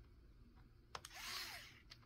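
Mini electric screwdriver's motor whirring faintly for about half a second as it drives a screw, with a click just before and another near the end.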